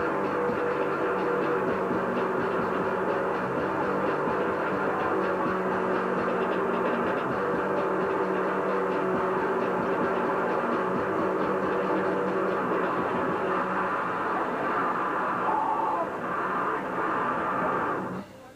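A noisecore band playing full blast: a dense wall of distorted guitar, bass and drums that starts abruptly and cuts off suddenly near the end.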